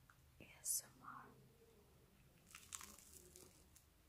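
Faint crunching of a bite into toast spread with peanut butter and honey: a soft crackle about a second in and a few more near the middle, with mouth noises.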